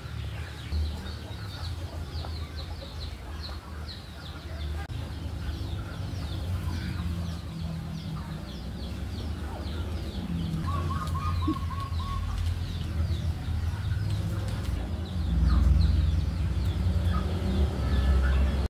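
Birds calling: many short, high chirps repeated again and again, with a brief rattling trill about ten seconds in. Under them is a steady low rumble that gets louder near the end.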